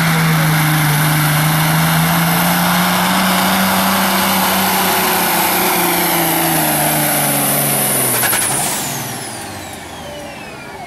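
Kenworth semi tractor's turbo diesel engine running flat out under the load of a pulling sled, its pitch sagging slowly lower as the load builds. Near the end the throttle is cut and the engine falls away, leaving a high turbo whistle gliding down as it winds down.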